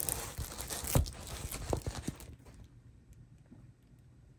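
Plastic-film-covered diamond painting canvas being lifted and folded, its protective film crinkling and rustling with a few sharp crackles, dying away a little over two seconds in.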